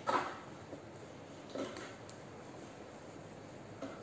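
Brief knocks and clatters of small plastic bottles being handled: the loudest right at the start, a smaller one about a second and a half in, and a faint one near the end, over low room noise.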